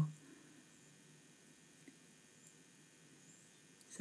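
Near silence: quiet room tone, with a couple of faint ticks about two seconds in from small paper bunting pieces being handled and pressed onto a card.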